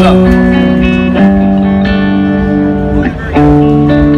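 PRS electric guitar played through a modelled PRS amp in the Waves Supermodels plugin, loud. It plays held two-string double-stops that change about a second in and again just after three seconds, pushing the modelled amp to break up where a single string stays clean.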